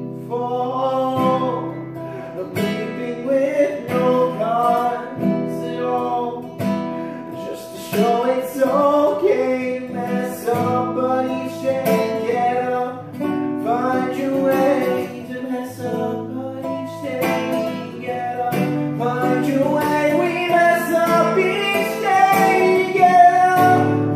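Acoustic guitar played through an instrumental passage of a song, with plucked and strummed chords over steady low notes and a wavering melody line above.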